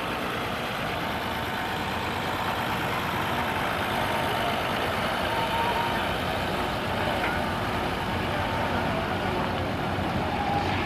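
Farm tractor engine running steadily as it slowly pulls a hay-ride wagon past.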